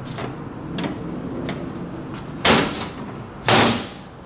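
Hinged lid of a trailer's under-deck storage compartment being swung down and shut, with two loud knocks about a second apart.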